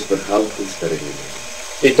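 Speech only: a man talking, fainter and more distant than the louder voice that starts near the end, with a short pause just before it.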